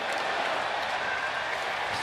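Steady crowd noise in a hockey arena, heard through the TV broadcast.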